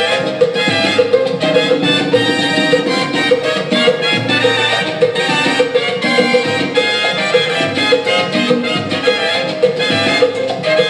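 A salsa recording playing: a full band with percussion over a steady, even beat.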